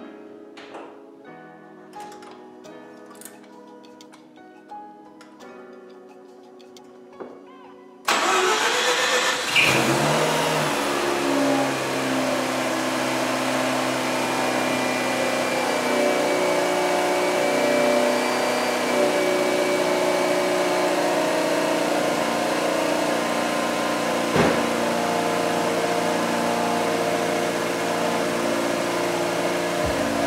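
Quiet background music, then about eight seconds in the Mazda RX-8's two-rotor 13B Renesis rotary engine starts abruptly and fires right up on a cold start. It flares up in revs and settles into a steady loud idle, with one short click later on. The engine is cranking on a new, uncharged lightweight Shorai battery rated at 540 cranking amps, and sounds healthy.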